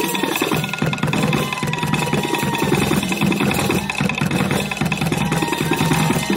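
Live traditional Bugis dance music: rapid, dense drumming with a high held melodic line that comes and goes above it.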